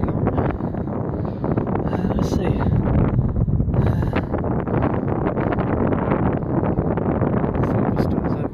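Wind buffeting the camera's microphone: a loud, steady low rumble that flutters unevenly.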